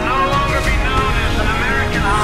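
Cinematic trailer soundtrack: a film score with a deep, steady rumble of sound effects beneath it.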